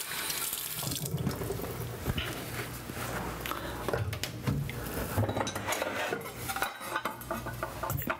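Kitchen tap running into the sink while hands are washed under it after handling raw chicken, with scattered light knocks.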